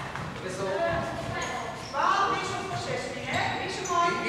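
Young players' voices calling out across an echoing sports hall, loudest about two seconds in and again near the end, with a basketball bouncing on the wooden court floor.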